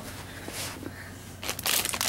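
Foil blind-bag packet crinkling as it is handled and opened, starting about a second and a half in after a quiet start.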